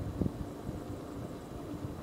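Car driving slowly, a steady low engine and road rumble, with a couple of faint knocks right at the start.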